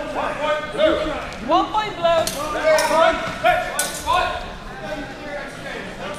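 Steel longswords striking during a fencing exchange: three sharp metallic hits in the middle, over excited voices calling out.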